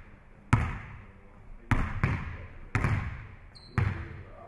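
A basketball bouncing on a gym floor, four bounces about a second apart, each echoing in the large gym. A brief high squeak comes just before the last bounce.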